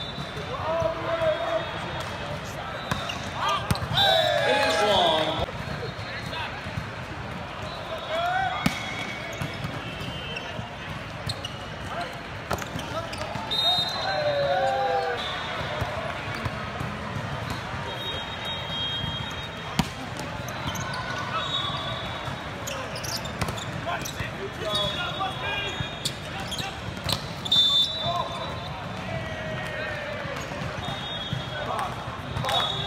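Sounds of an indoor volleyball match in a large, echoing hall: sharp ball contacts, brief high squeaks from shoes on the court, and players' voices calling out, with the busiest, loudest burst about four seconds in.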